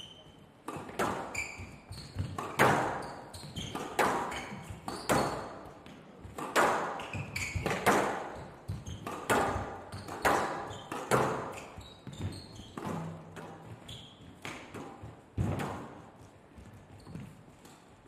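A squash rally: the ball cracks off the rackets and the front and side walls of a glass court, a sharp hit roughly every half to one second with a short echo after each.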